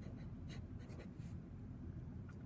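Felt-tip marker writing on paper: a few faint, short strokes.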